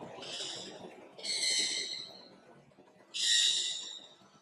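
A bird calling three times, harsh calls each well under a second, the last the loudest.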